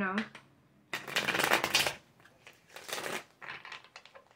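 A tarot deck being shuffled by hand: a dense crackle of cards running for about a second, then two shorter bursts of shuffling.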